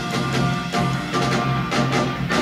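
Instrumental passage of a 1970s band song for piano, guitar, bass and percussion, with a steady beat.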